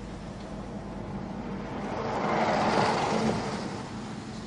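A bus driving past close by: engine and road noise swelling to a peak about three seconds in, then fading.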